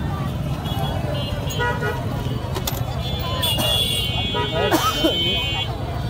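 Busy street traffic with a steady low rumble and vehicle horns tooting: a short toot about one and a half seconds in and a longer one from about three and a half to nearly five seconds in, over voices of people nearby.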